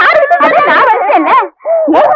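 A woman's high-pitched, wailing, crying voice, rising and falling in pitch, broken by a short pause about one and a half seconds in.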